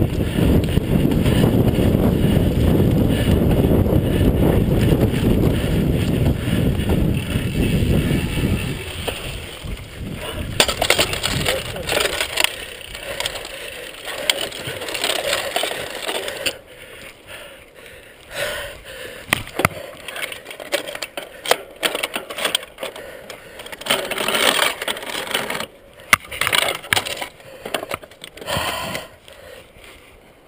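Mountain bike ridden fast over a rough forest dirt track. For the first nine seconds or so, wind buffets the microphone in a loud low rumble. After that the bike rattles, clicks and knocks unevenly over the bumps.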